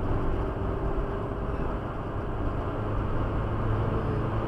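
Car engine and tyre noise heard from inside the cabin while driving on the open road and picking up speed, from about 83 to 97 km/h. A steady low engine hum sits under the road roar.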